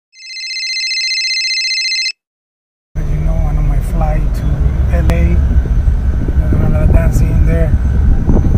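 An electronic phone ring, a steady trilling tone, lasts about two seconds and cuts off. After a short silence, the low rumble of a moving bus heard from inside the cabin starts and runs on.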